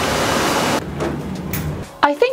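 Steady rushing noise of water treatment plant machinery and pipework in a large hall. About a second in, the hiss falls away and leaves a lower hum.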